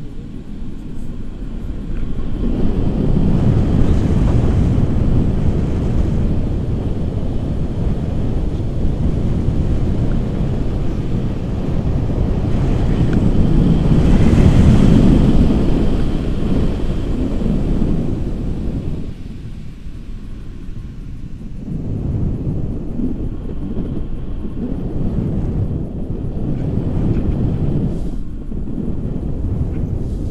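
Airflow of a paraglider in flight buffeting the camera's microphone: a loud, low rushing rumble that swells and eases in gusts, loudest about halfway through.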